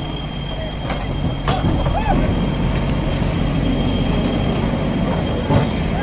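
Diesel engine of a JCB backhoe loader running steadily while it clears landslide mud, with scattered voices of onlookers over it.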